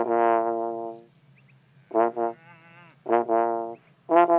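Trombone played solo: one long held note for about a second, a pause, then a few shorter notes of a slow melody.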